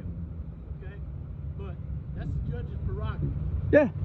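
A steady low motor hum runs throughout under brief speech, with a louder spoken "yeah" near the end.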